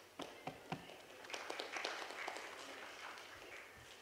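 A few sharp knocks, then about two seconds of scattered, light clapping from a small audience that fades out.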